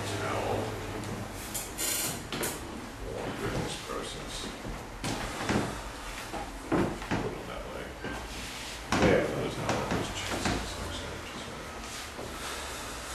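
Scattered knocks and rustles of people moving about and handling things close to the microphone, with faint voices.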